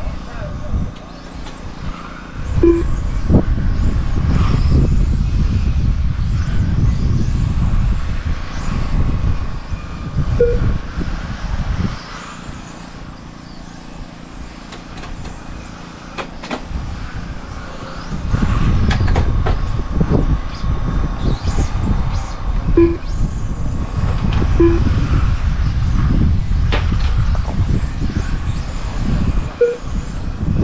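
1/10-scale front-wheel-drive touring cars racing around an asphalt RC track, with faint high motor whines rising and falling. Over them is a loud, gusty low rumble that eases off for several seconds midway, and a few short beeps.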